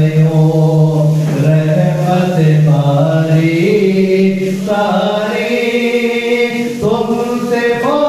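A man's voice reciting a naat unaccompanied, drawing out long sung notes that slide slowly up and down, with a new phrase beginning about a second before the end.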